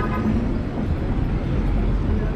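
Busy city street traffic: a steady low rumble of passing cars and a double-decker bus.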